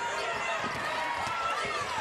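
Basketball arena ambience: a steady crowd murmur with players running on the hardwood court.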